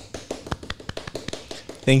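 A quick, irregular patter of light hand taps or claps, several a second, from the people around the table welcoming a guest. A man's voice starts near the end.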